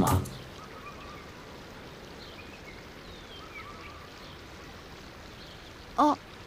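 Steady outdoor ambience of gently running river water, with faint, scattered bird chirps.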